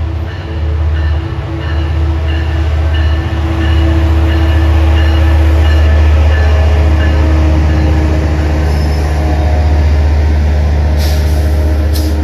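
Metrolink EMD F125 diesel locomotive pulling bilevel coaches into the station. Its engine is a steady deep rumble that grows loudest as it draws alongside, around the middle, with thin squealing from the wheels.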